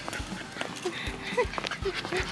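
A small poodle panting on a leash walk, with soft footsteps on brick paving at a steady pace of about two a second.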